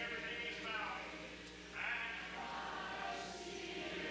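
Southern gospel male quartet and audience singing a slow hymn together, voices holding long notes; the singing dips briefly and a new phrase starts a little under two seconds in.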